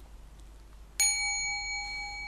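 A gong struck once about a second in, then ringing on with several clear steady tones that slowly fade.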